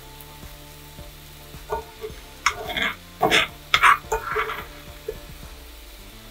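Sliced shallots sizzling in a skillet, with several short scrapes of a utensil lifting them out of the pan, bunched between about two and four and a half seconds in.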